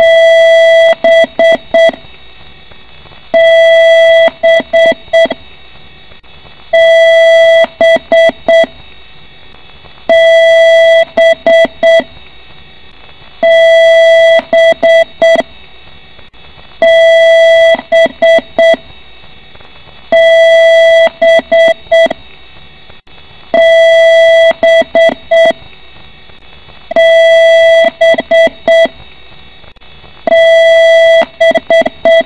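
PC BIOS power-on self-test beep code: a long beep followed by a few short beeps at the same pitch, the whole pattern repeating about every three and a half seconds over a steady background hum. A long-and-short beep pattern at startup is the kind of beep code that signals a hardware fault.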